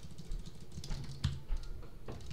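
Computer keyboard keystrokes: a run of separate clicks at an uneven pace as a terminal command is typed.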